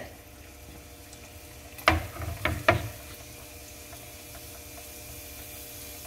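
Cut pieces of dough dropped into hot oil in a small non-stick frying pan: three short splashes close together about two seconds in, then faint steady frying.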